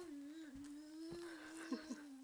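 A toddler humming one long, steady note with closed lips, wavering slightly in pitch.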